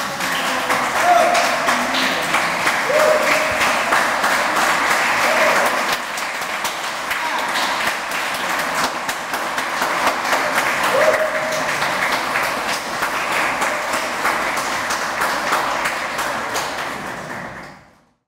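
Audience applauding, with a few short voices calling out over the clapping. The applause fades out near the end.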